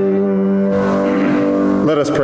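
Piano music closing on a long held chord that stops near the end.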